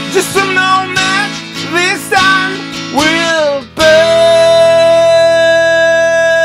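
A man singing to a strummed acoustic guitar, his voice wavering and sliding, then about four seconds in holding one long steady note over the guitar.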